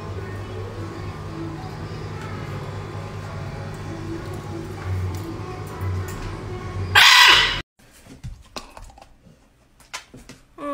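A large parrot lets out one loud, harsh squawk lasting about half a second, some seven seconds in, over a steady low hum.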